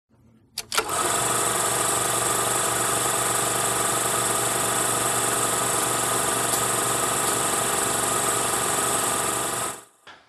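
Film projector running: two clicks as it starts, then a steady mechanical clatter and motor hum that cuts off suddenly just before the end.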